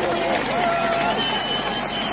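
Large stadium crowd screaming and cheering, many voices overlapping, with a shrill high whistle in the second half.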